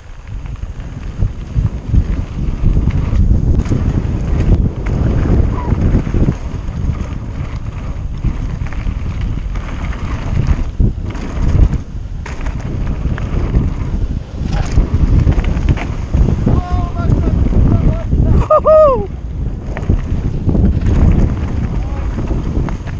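Heavy wind buffeting on the camera microphone over the rumble of mountain-bike tyres rolling fast on a gravel trail. A short pitched sound that bends up and down is heard about three seconds before the end.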